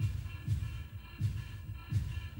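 Electronic jazz played live by a band: a deep bass-drum pulse repeats in an uneven pattern, about every half to three-quarters of a second, under steady, high sustained synth tones.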